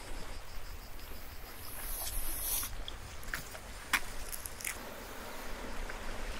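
Outdoor ambience: low wind rumble on a phone microphone, with insects chirping faintly in the first second. A few sharp clicks stand out from the middle on, the loudest about four seconds in.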